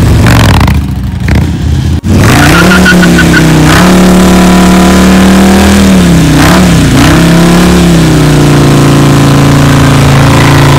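A motorcycle engine revving and falling away. After an abrupt cut, a V-twin motorcycle is held at high revs in a burnout, its rear tyre spinning and smoking on the pavement. The revs climb, hold steady, dip briefly twice around the middle, and settle a little lower near the end.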